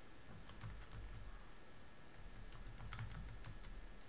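Faint key taps: a few soft clicks about half a second in, then a short run of them around three seconds in, as the result of 3000 × 1.075 is worked out.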